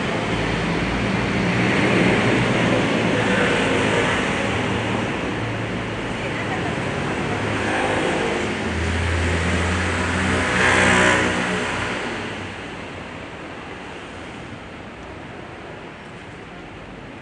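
Outdoor ambience: a steady wash of noise with indistinct voices, swelling about two seconds in and more strongly around eleven seconds, then easing off toward the end.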